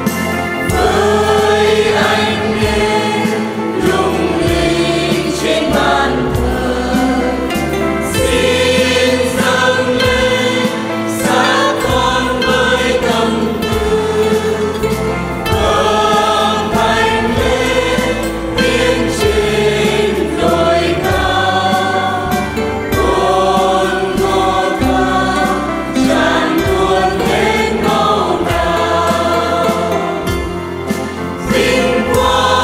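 Mixed choir of men and women singing a Vietnamese Catholic hymn, with electronic keyboard and guitar accompaniment, the notes held and moving smoothly from one to the next.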